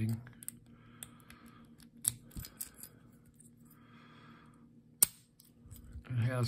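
Key worked into and turned in a laminated steel Squire No. 35 padlock: small metallic clicks and two soft scraping rasps, then one loud sharp snap about five seconds in as the spring-loaded shackle pops open.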